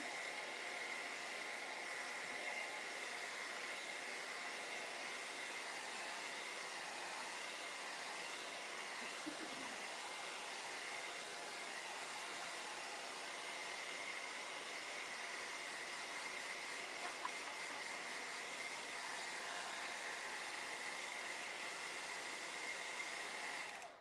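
Handheld hair dryer blowing steadily with a high whine, drying a white base coat of paint on a wooden door hanger; it switches off abruptly at the very end.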